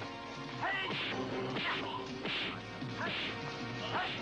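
Film fight sound effects: about four sharp punch and kick hits, less than a second apart, over a music score, with a short shout near the end.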